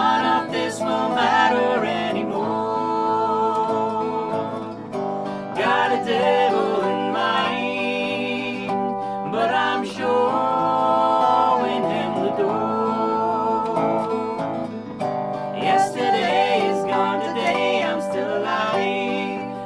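A live acoustic Americana band playing a slow song: a woman singing over strummed acoustic guitar and a lap-played resonator guitar with slide.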